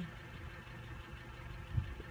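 Steady low hum of an idling engine, with a soft low bump near the end.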